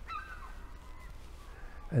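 A bird's short call in the first half-second, falling slightly in pitch, faint over quiet outdoor background noise.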